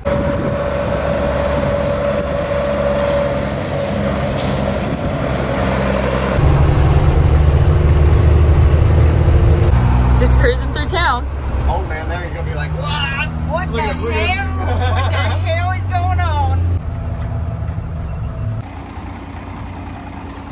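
Five-ton military cargo truck's diesel engine running as it drives, with a brief hiss about four and a half seconds in. From about six seconds in the engine is heard from inside the cab, louder and deeper.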